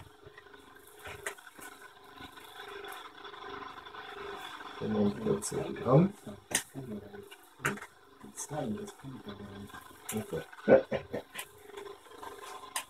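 Quiet, indistinct speech with sharp clicks and light knocks from small items being handled on a workbench, over a faint steady hum.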